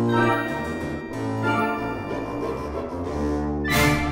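Orchestral music with low bowed-string notes under a moving melody, and a short rushing swell near the end.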